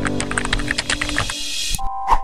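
Keyboard-typing sound effect, a rapid run of short clicks, over electronic intro music; a chime sounds at the very end.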